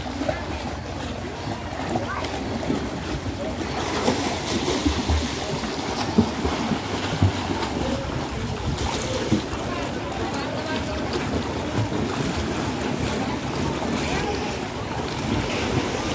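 Pool water splashing under a child's kicking feet as she swims on her back: a steady wash of water noise broken by small, irregular splashes.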